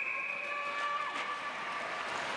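Referee's whistle blown to stop play in an ice hockey game, one long steady blast that cuts off near the end, over the noise of the rink.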